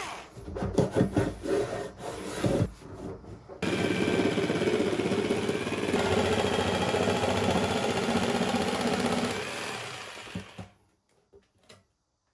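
A few short bursts of a cordless drill driving screws into wood. Then a corded jigsaw cuts a circular speaker-driver hole in a wooden panel, guided around a homemade compass jig. The saw runs steadily for about seven seconds and winds down near the end.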